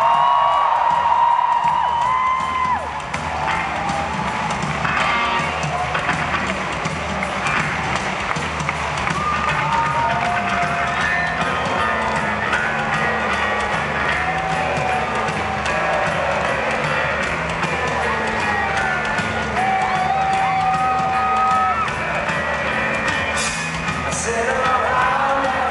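Live punk rock band playing a song's intro: a steady drum kit beat with an electric bass riff. A festival crowd cheers and whoops over it.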